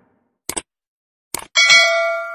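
Subscribe-button animation sound effects: a quick double mouse click about half a second in and another click a moment later, then a bright notification-bell ding that rings and fades.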